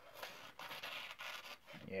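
Dull kitchen knife blade drawn through a sheet of paper, a faint scratchy rasp as the paper tears rather than being sliced cleanly: the sign of a dull edge.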